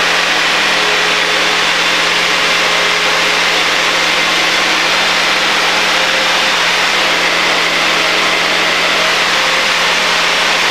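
Light aircraft's propeller engine running steadily in the climb after takeoff, a constant drone under a steady rush of air noise.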